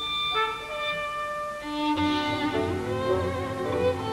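Solo violin playing long held notes in a virtuoso concerto. A deeper accompaniment comes in underneath about halfway.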